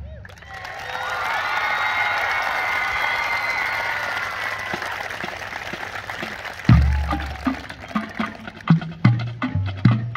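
A crowd cheering and applauding with shouts as the marching band's music dies away. About seven seconds in, the band starts again with loud low bass-drum and brass hits and sharp percussion strikes.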